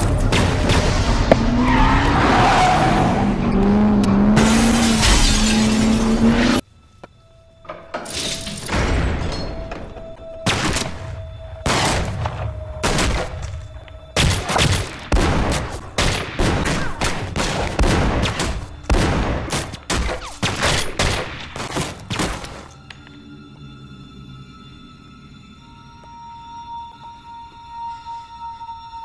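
Loud dramatic soundtrack music that cuts off abruptly about six seconds in. Then a TV-drama shootout: many irregular handgun shots and impacts for about fourteen seconds. It gives way to a quiet, tense music bed of sustained tones.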